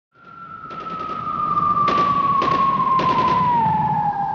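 Cinematic logo-intro sound effect: a single tone that fades in and slowly glides downward over a low rumble, with a handful of sharp hits along the way.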